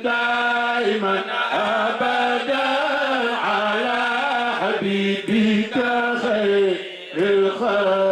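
A man chanting a devotional religious song unaccompanied, in long held notes that slide and ornament between pitches, with brief breaks for breath about five and seven seconds in.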